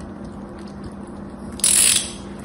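A craft knife shaving dry soap: faint small scratches, then a loud, crisp crackling scrape near the end as a shaving comes away.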